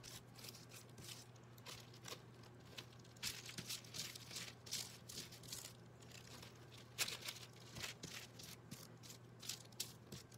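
Faint scratchy strokes of a paintbrush dragging paint across thin deli paper, the paper rustling and crinkling under it, with one sharper click about seven seconds in. A low steady hum sits underneath.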